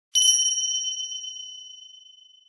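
A single high, bell-like ding, struck sharply and left to ring, fading away slowly over about two seconds.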